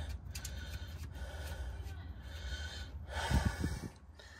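A man breathing hard close to the microphone as he works on his back under the car, with a louder snort-like exhale over a low hum about three seconds in.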